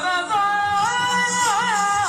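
Yakshagana vocal music: a singer holds one long note that steps up in pitch about a second in, then wavers in quick ornamental turns near the end, with a softer accompaniment beneath.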